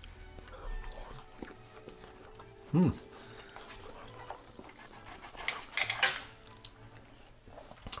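Knife and fork cutting a small piece of grilled steak on a plate: light scrapes and clinks of the cutlery against the plate, loudest in a short cluster about five and a half to six seconds in. A short hum of approval, 'mmm', comes near three seconds.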